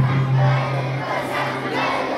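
A large group of children's voices calling out together in unison, with a loud low steady tone underneath that starts sharply and holds for about a second and a half.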